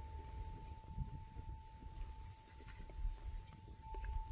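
Faint outdoor background of crickets chirping steadily, with a thin steady tone and light rustling and clicks from plant stems being handled.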